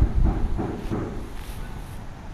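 Low, uneven wind rumble buffeting the camera's microphone, strongest in the first second and easing off toward the end.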